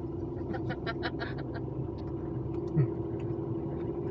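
Steady drone of a moving car heard from inside the cabin, engine and road noise. Short faint vocal sounds come through it in the first half.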